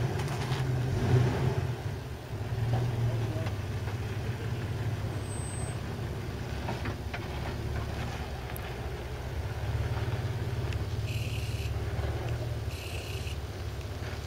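Jeep Wrangler engine running with a steady low rumble as the Jeep crawls slowly over dirt mounds.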